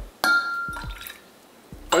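Porcelain gaiwan lid set back onto its bowl with a single sharp clink that rings briefly and fades.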